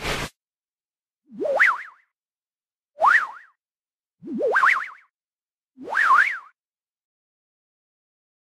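A cartoon 'boing' sound effect four times, about a second and a half apart, each a quick rise in pitch that wobbles up and down. A short whoosh ends just as it begins.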